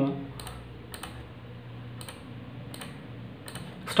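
Mouse clicks on the keys of a DVR's on-screen keyboard while a password is entered: about six light, separate clicks, roughly one a second, over a faint low hum.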